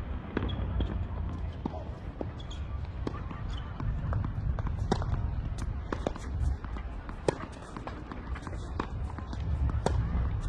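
Tennis ball bounced repeatedly on a hard court by the server before a serve, as short sharp thuds at irregular intervals over a steady low rumble.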